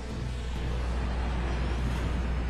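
A steady low rumble with a hiss over it, slowly swelling in loudness: a dramatic build-up sound effect in the anime's soundtrack.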